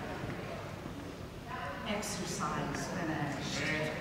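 Indistinct talking, quiet and unclear, starting about a second and a half in, over low room noise.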